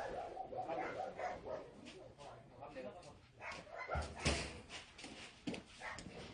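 Dogs barking and yelping in short wavering calls, with indistinct voices mixed in. A loud sharp knock comes about four seconds in.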